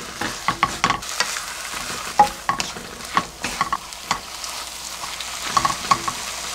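Kimchi stir-frying in a nonstick wok: a steady sizzle broken by frequent irregular clicks and scrapes of a silicone spatula and wooden spoon tossing it against the pan.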